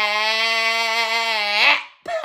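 A person's voice singing one long held note with a slight waver at the end of a song. It swells briefly and breaks off just before the end.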